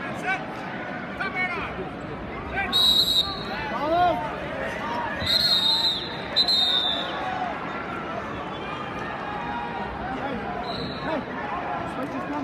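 Arena crowd talking and shouting, cut by short high-pitched whistle blasts: one about three seconds in, two close together between about five and seven seconds, and a brief one near the end.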